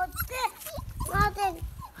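A puppy whining in two short, high-pitched cries: one at the very start and another about a second in.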